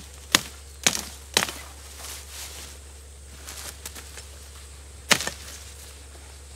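Carbon-steel chopper blade hacking through willow shoots. There are three sharp chops about half a second apart, a few faint ones in the middle, and one more hard chop near the end.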